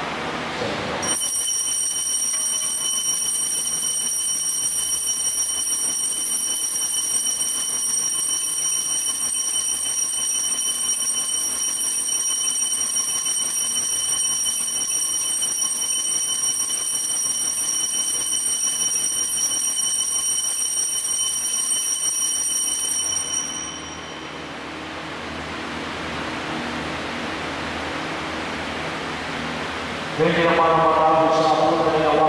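Altar bells rung without a break through the elevation of the host at the consecration of the Mass: a steady, high metallic ringing that starts sharply about a second in and stops about 23 seconds in, followed by a fainter hiss.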